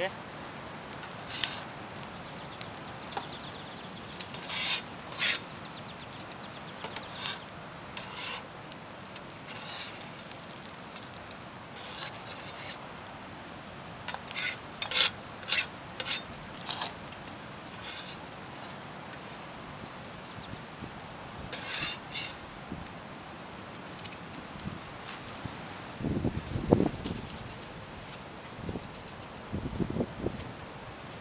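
Metal spatula scraping across a flat steel griddle plate, in short, sharp strokes at irregular intervals, with a quick run of strokes about halfway through. Near the end, a few duller knocks.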